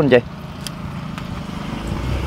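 A motor vehicle's engine, a low steady hum that grows slowly louder as it comes closer.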